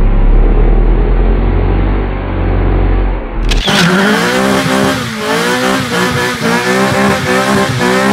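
A front-wheel-drive Acura Integra doing a burnout: the engine is held at high revs, its pitch bouncing in quick small dips, over the hiss and squeal of the spinning front tyre. For about the first three and a half seconds the sound is muffled, with a heavy deep rumble, before it opens up to full clarity.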